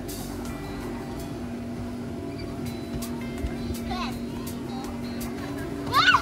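Steady electric hum of an inflatable slide's air blower, holding one unchanging low tone, with a faint voice briefly in the background about two-thirds of the way through.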